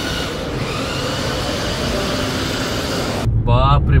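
Steady background hum of a large indoor shopping-mall space. After about three seconds it cuts suddenly to the low road and engine rumble inside a moving car's cabin, with a man starting to speak.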